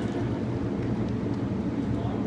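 Steady low rumble of the indoor soccer hall's background noise, with a few faint knocks.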